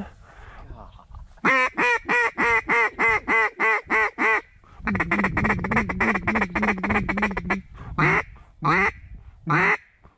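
Duck call blown close by in hen-mallard quacks: a descending run of about nine quacks, a faster run of quacks, then three single drawn-out quacks near the end, calling to a small group of ducks in flight.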